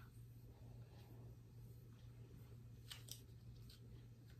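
Near silence over a steady low hum, with a few faint clicks, two close together about three seconds in: a plastic hair clip being fastened onto a section of hair.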